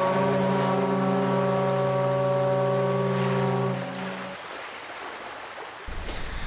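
Cruise ship's horn sounding one long, steady blast of about four seconds that then fades, over a wash of ocean waves that carries on after it.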